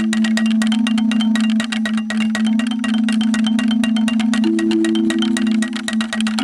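Outdoor playground marimba with metal bars over tube resonators, struck fast with two mallets. A low note is kept ringing by a rapid roll, with a second, higher note joining near the end.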